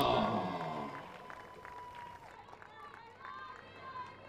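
Music fading out over the first second, then faint open-air stadium ambience with distant, indistinct voices and a few small clicks.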